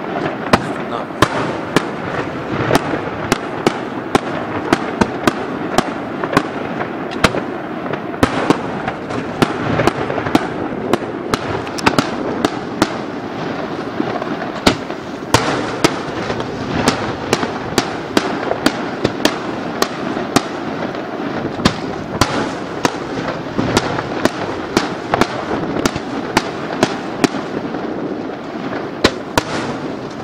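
Aerial fireworks shells bursting in rapid succession: a continuous wash of bursts and crackle with sharp bangs roughly twice a second.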